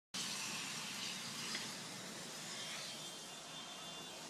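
Steady hissing rush of a burning LPG-fuelled car fire, loudest at first and easing slightly, with a faint high whine in the second half.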